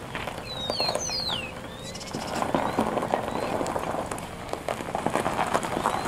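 A small bird gives a few quick falling chirps about a second in, over scattered irregular clicks and taps. A faint steady hum stops about two seconds in.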